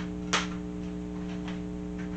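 A plastic DVD case clacks sharply once about a third of a second in, and again faintly near the middle, as cases are handled, over a steady electrical hum.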